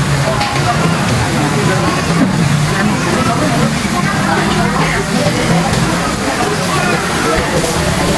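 Pork sizzling on a tabletop grill pan over a portable gas burner, a steady hiss under the chatter of a busy restaurant dining room.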